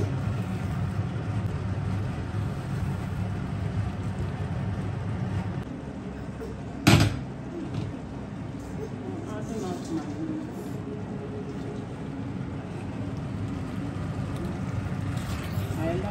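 Kitchen cooking sounds: a low steady hum that drops away about six seconds in, then a single sharp knock of cookware about seven seconds in.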